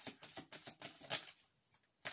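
Tarot cards being handled as one is drawn from the deck: a quick run of light clicks and flicks that stops about a second and a half in.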